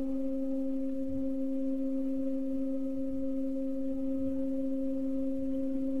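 A steady, unwavering low hum-like tone with a fainter overtone, holding one pitch throughout.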